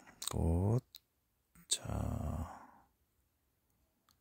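A few sharp clicks of game tiles being handled and set on a table, between a short voiced murmur at the start and a breathy exhale that fades out about three seconds in.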